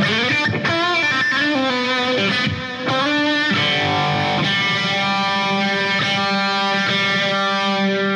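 Electric guitar played through a Boss ME-70 multi-effects processor, set to its Stack amp model with Uni-Vibe modulation and an analog-type delay. The delay time and feedback are adjusted while he plays. A run of short notes gives way, about three and a half seconds in, to a long held note that rings out.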